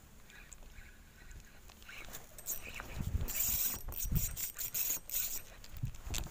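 Clothing rustling and knocking against a body-worn camera as the angler moves, quiet at first, then busier from about two seconds in with crackling and several dull thumps.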